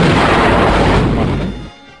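T-55AGM tank's main gun firing: a loud blast that rolls on and dies away about a second and a half in.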